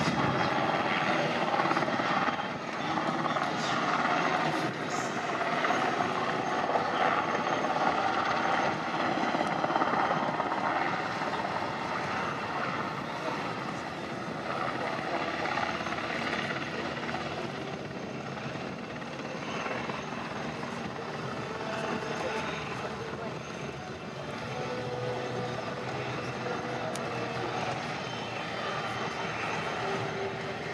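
Military transport helicopter, an NH90 Caïman, with a steady rotor and turbine noise as it comes in low, hovers and settles on the ground with its rotor still turning. It is loudest in the first half and eases somewhat once it is down.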